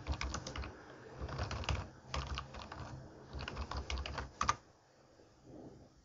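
Typing on a computer keyboard: quick runs of keystrokes that stop about four and a half seconds in.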